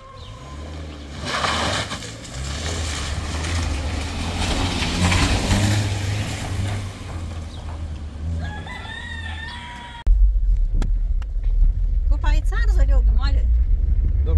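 A Peugeot Pars sedan drives up on a dirt street, its engine and tyres on the gravel growing louder, and a rooster crows about eight and a half seconds in. After a sudden cut at ten seconds, a loud, deep engine and road rumble is heard inside the car's cabin while it drives on the dirt road, with a short stretch of voice near the end.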